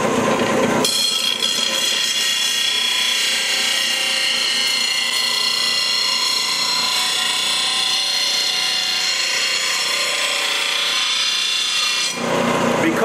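Steel lawn tractor mower blade being ground on the finer-grit wheel of a Jet bench grinder: a steady, high grinding hiss with thin whining tones, starting about a second in as the blade meets the wheel. The long, continuous grind is the work of taking down a badly worn, rounded edge.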